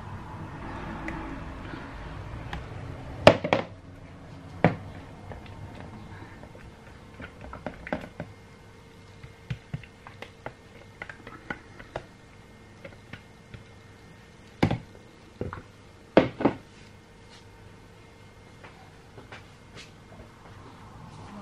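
Thick soap batter poured in a thin stream from a plastic measuring jug into another jug, a soft pouring sound for the first few seconds. Then a series of sharp knocks and taps as the plastic jugs are handled and set down on a hard worktop, the loudest a little after three seconds and twice near the middle-to-end. A faint steady hum runs underneath.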